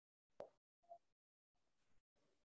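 Near silence over a video-call line, broken by one faint sharp click about half a second in and a short soft blip just before the one-second mark.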